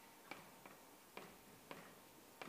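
Chalk striking a blackboard while Chinese characters are written: four faint, sharp taps at uneven intervals, one per stroke.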